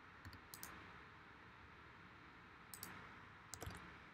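Faint computer mouse and keyboard clicks, in four small pairs or clusters spread over about four seconds, over low room noise.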